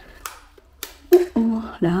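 Light switches clicking: three sharp clicks in the first second or so, as lights are switched on. A woman's voice speaks briefly in the second half.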